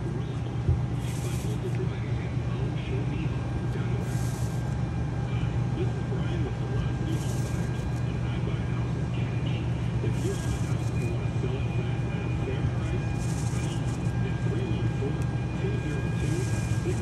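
Electric power awning on a Forest River Salem Hemisphere travel trailer extending. Its motor runs with a steady hum, and a short hiss recurs about every three seconds.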